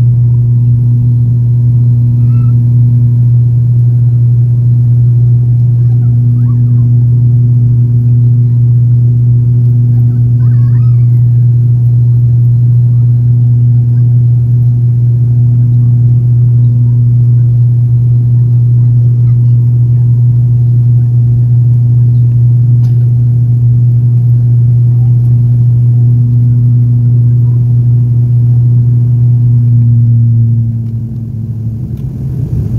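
Turboprop airliner's engine and propeller heard from a window seat beside the nacelle while the plane climbs after takeoff: a loud, steady low drone with no change in pitch.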